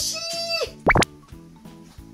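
Light background music under a quick rising cartoon-style sound effect, a single sharp upward sweep about a second in, added in editing to mark the near miss.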